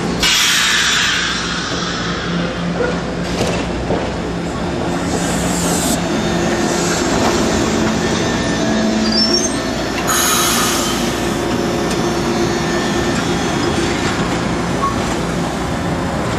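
A SEPTA trolley car running past on curved street track, its wheels squealing loudly on the curve near the start and again about ten seconds in, over a steady low running hum.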